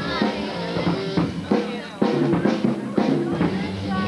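Live band music with a drum kit keeping a steady beat, strikes about twice a second, over people talking.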